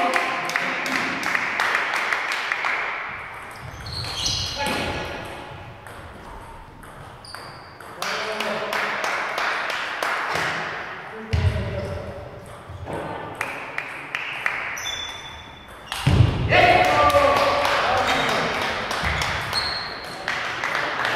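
Celluloid-type table tennis ball clicking back and forth between rubber paddles and the table in quick rallies. Voices call out between points, loudest a little past three quarters of the way through.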